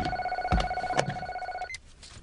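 Cordless telephone's electronic ringer trilling for about a second and a half, then cut off as the phone is answered, with a couple of soft thumps underneath.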